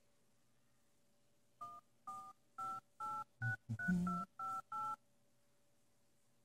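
Touch-tone telephone keypad dialling a number: about nine short two-note beeps in quick succession, starting about a second and a half in.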